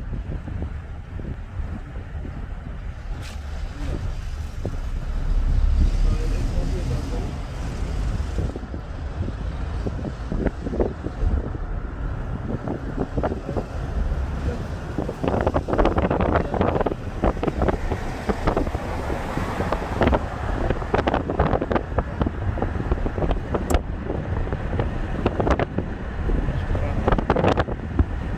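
Steady low rumble of a moving car, with wind buffeting the microphone.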